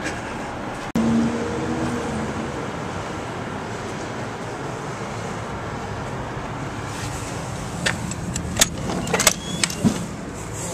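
Steady city street traffic noise, with a few sharp clicks and knocks near the end.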